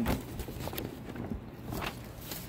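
Irregular footsteps and light knocks on a concrete floor as a queue shuffles forward.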